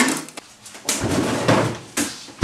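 A freezer drawer being pulled open and frozen things knocked about inside it as she rummages, ending in a sharp knock.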